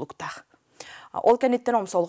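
Only speech: a woman talking, with a brief pause about half a second in before she carries on.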